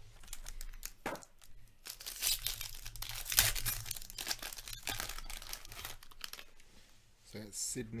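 Foil wrapper of a hockey card pack being torn open and crinkled by hand, a run of crackling rips with the loudest about three and a half seconds in.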